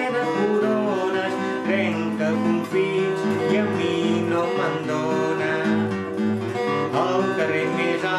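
Acoustic guitar accompanying a man singing a traditional Catalan children's song, the voice coming and going over a steady guitar rhythm.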